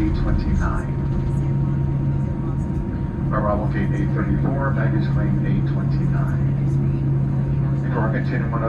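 Boeing 787-9 cabin noise while taxiing: the engines and airflow make a steady drone with a low, even hum underneath, heard through the cabin.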